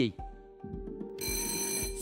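Game-show electronic sound effects: a steady held tone, joined about a second in by a bright, ringing electronic chime. The chime is the signal of a team buzzing in to answer.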